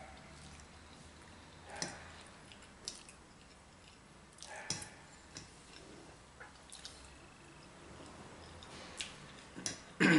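Faint sounds of eating spaghetti from a frying pan with a fork: a handful of light clicks of the metal fork against the pan, with soft wet mouth sounds of slurping and chewing.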